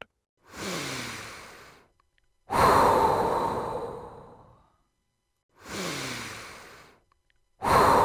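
Slow, deep breathing: a breath in, then a longer, louder breath out that fades away. It happens twice, and the second breath out starts near the end.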